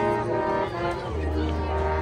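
High school marching band playing: brass holding sustained chords, with a low bass note coming in about a second in and held.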